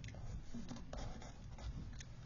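Quiet rustling and scraping of paper pages in a ring-bound planner as they are handled and leafed through, with a few light ticks.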